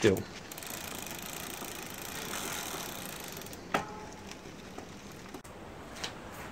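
Paraffin-and-PTFE-waxed bicycle chain running over the rear cassette and derailleur pulleys as the drivetrain turns: a steady, quiet whirr, lovely and smooth, with one sharp click a little under four seconds in.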